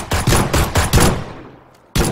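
Automatic gunfire from the mobile shooter game PUBG: a rapid burst of shots, about seven a second, that stops about a second in and rings out. Another sharp shot comes right at the end.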